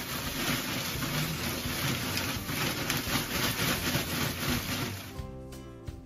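Coarse pine shavings pouring out of a plastic bag onto the floor, a dense steady hiss that stops near the end. Background music with sustained notes continues underneath and comes through clearly once the pouring noise stops.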